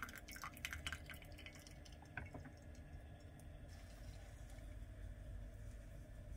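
Last drops of brewed coffee dripping from a plastic pour-over dripper into a full mug of coffee. There is a quick run of drips in the first couple of seconds, then the dripping stops.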